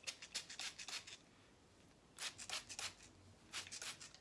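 Short rustling hisses, several in quick succession, coming in three clusters as a curly wig is styled by hand.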